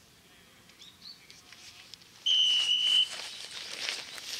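A referee's whistle blown once: a single steady, high, shrill blast of just under a second, starting a little past halfway and much louder than anything else.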